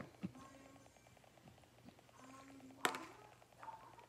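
A metal spoon scooping salad and tapping against a plastic container, faint, with a small tap just after the start and one sharp tap about three seconds in.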